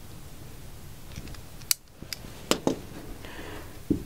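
A utility knife slitting lengthwise through a baton's foam grip, a faint steady cutting rasp. In the second half come several sharp clicks and knocks.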